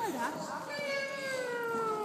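A young child's voice drawing out one long, meow-like call that slowly falls in pitch, after a few short voiced sounds among the children.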